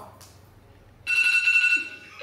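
Smartphone timer alarm going off about a second in: a steady, high electronic tone that cuts off after under a second. It signals that the time for the cookie-decorating round is up.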